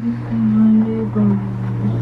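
A man's low, drawn-out hum, held as a steady drone that shifts slightly in pitch a few times.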